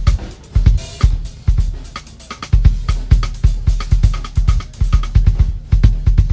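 DW drum kit played in a solo: bass drum, snare, toms and cymbals. Quick bass drum strokes come thicker from about halfway through.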